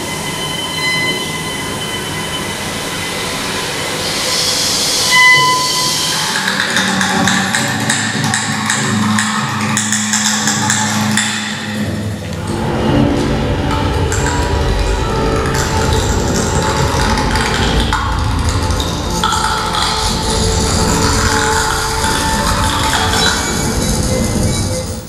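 Contemporary chamber ensemble playing experimental music: held tones and bright metallic pings at first, then a dense rustling, shimmering texture. About halfway through, a deep low rumble enters underneath and carries on.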